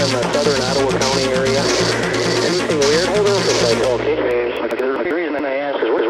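Electronic track with a steady pulsing beat and bass and a wavering voice over it; about four seconds in, the beat and bass cut out, leaving a spoken voice with the narrow, thin sound of a radio.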